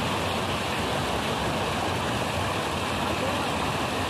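Fast current of water rushing steadily through a concrete channel: water let out in a rush from a store held back upstream, driving fish into a net.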